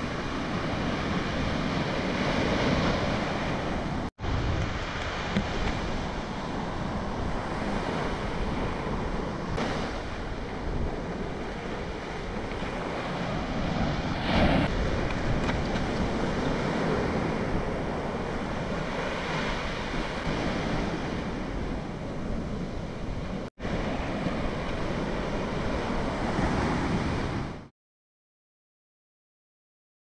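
Ocean surf washing and breaking at the shoreline in uneven swells, with wind noise on the microphone. The sound drops out for an instant twice and stops abruptly just before the end.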